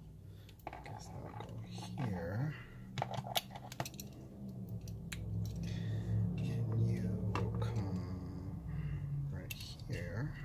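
Small clicks and taps of wire leads and crimp terminals being handled and fitted into a plastic power-strip housing. Under them runs a man's low wordless voice that wavers in pitch.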